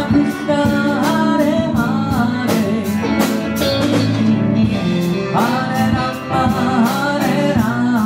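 A band playing live: a singer's melody in two phrases, with a short break between them, over sustained instrumental chords and a steady percussion beat.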